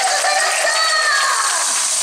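Audience applauding, with voices calling out over the clapping, including one drawn-out call that falls in pitch about a second in.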